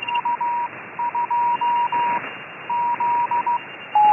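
Morse code (CW) signal coming through the receiver of a FlexRadio 6600 tuned to the 20-meter band. A steady mid-pitched beep is keyed in dots and dashes over a constant band of receiver hiss, with a short break a little past halfway.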